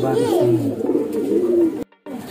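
Caged racing pigeons cooing: low, drawn-out coos that waver in pitch. The sound cuts off suddenly just before the end.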